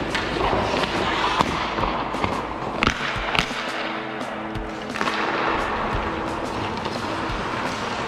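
Hockey drill sounds on an indoor rink: several sharp clacks of puck and sticks in the first half, over a steady scraping haze, with music playing in the background.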